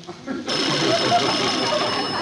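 Studio audience laughing, breaking out about half a second in and carrying on loudly after a punchline.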